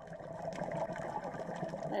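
Underwater water noise picked up by a diving camera: a steady, dense bubbling hiss that cuts off abruptly at the end.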